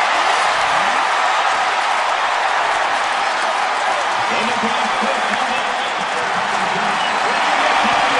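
Large stadium crowd cheering a touchdown, a steady, dense wash of noise that holds level throughout, with faint voices showing through about halfway.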